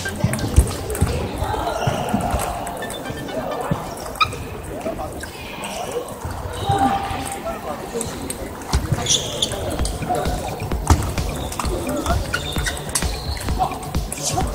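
Irregular clicks of celluloid table tennis balls striking tables and paddles from many matches at once, ringing in a large echoing gymnasium over a murmur of voices.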